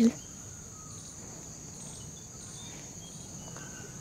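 Steady, high-pitched drone of insects, likely crickets, with a few faint, short chirps scattered through it.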